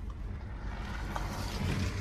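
Car driving slowly over a rutted dirt road: a steady low rumble of engine and tyres.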